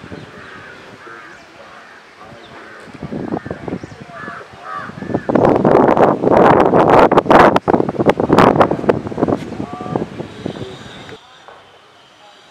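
Crows calling repeatedly, then a loud rushing noise with crackling clicks for about five seconds from the middle on, over outdoor voices.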